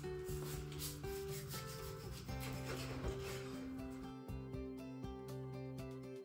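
A large kitchen knife sawing through a raw pork shoulder on a plastic cutting board, in repeated short rubbing strokes, over background music.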